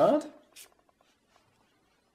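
A man's voice finishing a dictated word at the very start, then near silence with a few faint scratches of a pen writing on paper.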